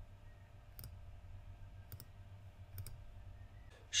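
A few faint computer mouse clicks over a low, steady room hum.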